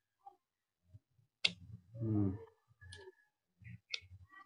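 Sharp clicks of scissors snipping through the tough root mass of a kimeng (Ficus microcarpa) bonsai to split it, three cuts in all, spaced about a second and a half apart. Between the first two cuts comes a short voiced hum.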